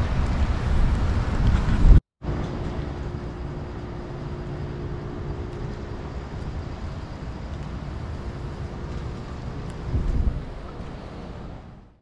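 Outdoor ambience on a wet, windy day: wind rumbling on the microphone for about two seconds, cut off abruptly. Then a steadier, quieter wash of background noise with a faint low hum, fading out near the end.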